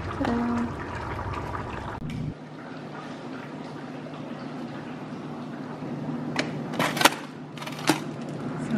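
Plastic food containers knocking against each other and the shelf as they are pushed into a freezer: a few sharp knocks near the end, over a steady background hum.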